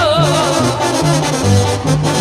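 Live banda music: the brass section plays over a bouncing tuba bass line between sung phrases, with a wavering held note in the first half second.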